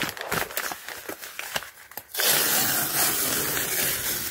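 Brown kraft-paper mailer bag crinkling and crackling in the hands. About two seconds in it is ripped open in one long, continuous pull.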